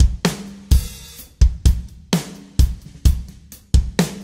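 Sampled acoustic rock drum kit playing a slow verse groove at 64 bpm: kick, snare and hi-hat, with cymbals. This is the wet mix, heavy with room sound and reverb, so each hit rings out into a long tail.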